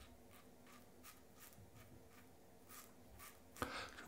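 Faint short scrapes of a Rex Supply Ambassador stainless-steel double-edge safety razor cutting lathered stubble, a few strokes a second. A brief louder sound comes near the end.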